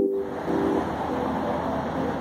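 Electric-piano music, loud for the first moment, then continuing faintly. Steady city street traffic noise comes in about a fifth of a second in and takes over.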